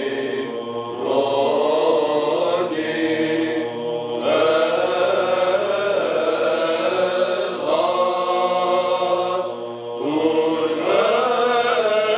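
Orthodox church chant: sung vocal phrases held over a steady low drone, the melody moving to a new phrase every few seconds.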